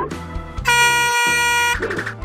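Background music with a steady beat. About two-thirds of a second in, a truck air horn sounds one long steady blast lasting about a second, a cartoon-style horn sound effect.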